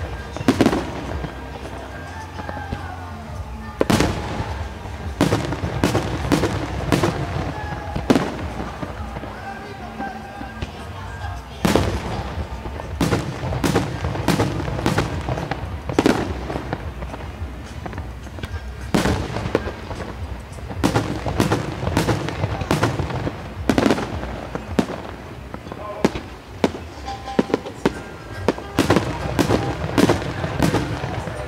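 Aerial firework shells bursting at night: dozens of sharp bangs at irregular intervals, often in quick clusters, with a few brief lulls between salvos.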